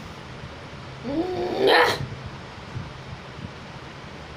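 A single cry of about a second, a yowling or wailing voice whose pitch bends upward and then breaks into a harsh, loud screech before cutting off.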